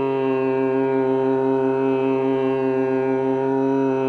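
Opening theme music: a steady, sustained drone rich in overtones. It settles onto one held pitch at the start and holds there evenly.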